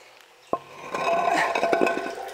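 A concrete tank lid scrapes and knocks as it is lifted about half a second in. Then water trickles into the concrete storage tank from the well pipe, growing louder as the opening clears. The flow runs on its own by gravity with the well pump switched off.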